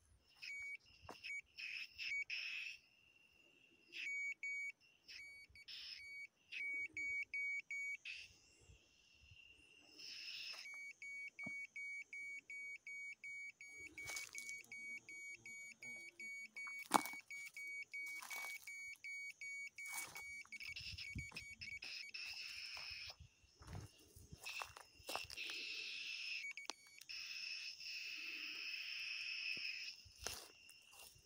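High electronic beep from a homemade ionic/electrostatic long range locator, sounding in fast trains of short pips, about four or five a second, with some longer steady stretches. Dry leaves and twigs crunch underfoot.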